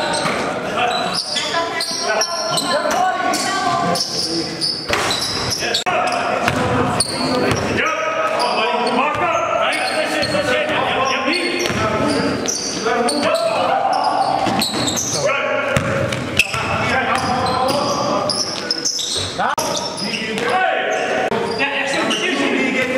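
Live basketball game sound in a gym: a basketball bouncing on the court floor amid players' shouts and voices, echoing in the large hall.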